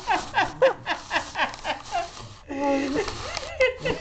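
People laughing: a long run of quick, repeated laughs, with one held voiced note about two and a half seconds in.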